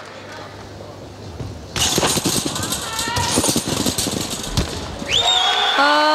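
Arena crowd breaking into cheering and applause suddenly about two seconds in, with a high whistle and sustained shouts near the end.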